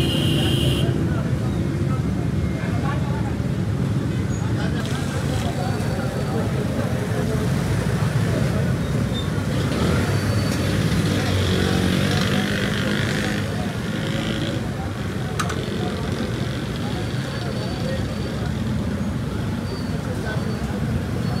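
Busy street ambience: steady road traffic with people talking in the background.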